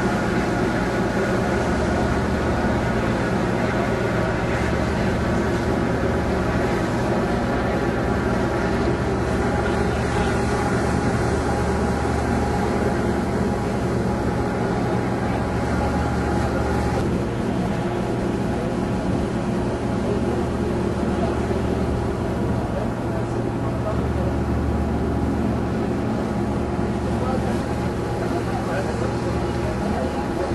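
Steady low drone of a passenger boat's engine under way, with a steady hiss over it.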